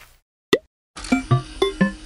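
Cartoon intro jingle: a single short pop about half a second in, then from about a second in a quick run of bouncy, pitched plopping notes, about four to five a second, over a low steady tone.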